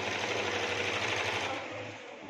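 Electric sewing machine running a steady stitching run, fading away near the end.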